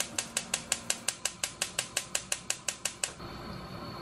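Kitchen knife chopping rapidly on a wooden cutting board, about six strikes a second, stopping about three seconds in. A steady hiss follows near the end.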